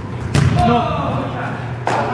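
Soccer ball struck hard on a gym floor, a loud thump about a third of a second in, with a second sharp knock near the end, in a hard-walled gym. Players' voices call out between the two.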